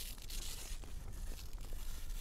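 Snow being scraped and scooped from a snow-pit wall into a plastic sample container: a continuous scratchy hiss of many short scraping strokes, with the rustle of a protective clean suit and a low rumble underneath.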